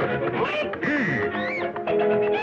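Early-1930s cartoon orchestral score with comic sound effects: a quacking honk about a second in, and pitches that slide up and down.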